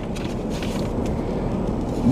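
Steady low rumble inside a car's cabin, with the engine idling while the car sits parked.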